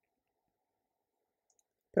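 Near silence: room tone, with one faint, brief click about one and a half seconds in and a voice starting at the very end.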